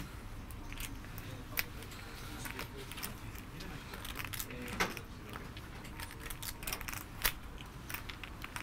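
Clay poker chips clicking against one another as a player handles her chip stacks: scattered sharp clicks at irregular intervals over a low steady room hum.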